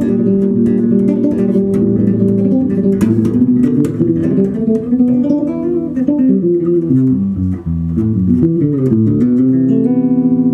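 A Skjold six-string extended-range electric bass, played fingerstyle through an amp and picked up by a camera microphone in a small room: a busy passage of notes and chords. Near the end a stepping line falls and settles into a held, ringing chord.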